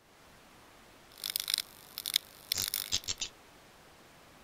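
Sound effect of an animated end card: a few short bursts of scratchy, hissy noise with clicks, about a second in, at two seconds and again from about two and a half to three seconds, over a faint steady hiss.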